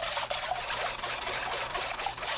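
Blended chayote juice trickling through a stainless mesh sieve into a glass bowl, with light scratchy ticks from a utensil stirring the pulp against the mesh.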